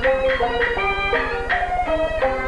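Peking opera accompaniment: a jinghu-led string band playing a brisk melodic interlude, a new note every fraction of a second, over a steady low hum.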